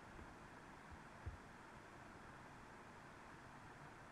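Near silence: faint steady hiss of room tone, with one soft low thump about a second in.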